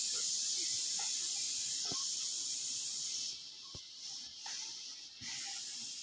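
A steady high-pitched hiss that thins out and comes and goes from about three seconds in, with a few faint clicks.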